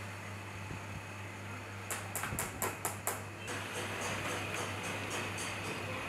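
Hand tool clicking in a car engine bay, a quick run of about seven sharp metallic clicks in the middle, over a steady low workshop hum.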